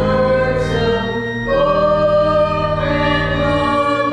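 Church organ accompanying voices singing a hymn, in long held notes, with the chord changing about a second and a half in.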